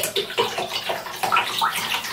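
Water trickling and plinking into a shallow bath of water in a bathtub: a quick, irregular run of small bubbly drops and splashes.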